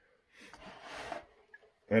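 A person's audible breath out, about a second long, swelling and then stopping, before speech starts at the end.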